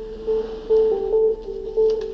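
Background music: a plucked-string instrument picking a repeated note, with the melody changing notes above it.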